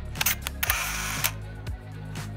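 Camera shutter sound effect over background music with a steady beat: a few quick clicks, then a short burst of shutter noise lasting about half a second.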